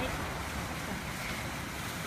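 Steady rushing splash of water falling in an outdoor fountain, an even hiss with no separate events.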